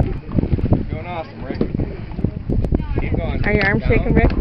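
Wind buffeting the microphone on an open boat, with short gusty thumps throughout. Voices call out in wavering, whooping tones about a second in and again near the end.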